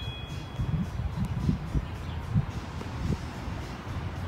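Faint background music over an uneven low rumble of wind and handling noise on a handheld microphone.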